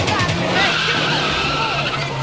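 A drumless breakdown in an old-school hardcore dance track, with sampled effects that squeal and glide in pitch, like skidding tyres, over a low held synth note.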